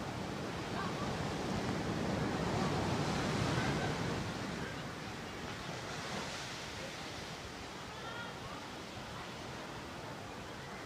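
Ocean surf washing in, one swell rising about two seconds in and easing off by about five seconds.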